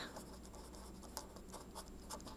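Red pen writing a word on a paper worksheet: faint scratching strokes of the tip across the paper.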